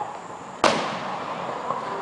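A single firework burst, one sharp bang about half a second in that trails off briefly, over steady background noise.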